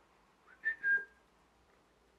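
A person whistling a short two-note call to a bird, the second note a little lower, about half a second in.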